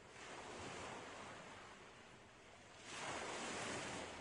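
Faint rush of waves washing in, swelling twice: once just after the start and more strongly about three seconds in.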